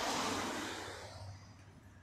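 A rushing noise that fades away over about a second and a half, over a steady low hum.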